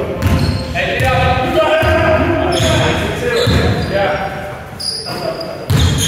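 Basketball dribbled on a hardwood sports-hall floor, several irregular bounces echoing in the large hall.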